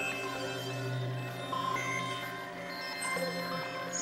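Experimental electronic synthesizer music: a low sustained drone swelling and fading under layered steady tones, with short higher tones coming and going above it.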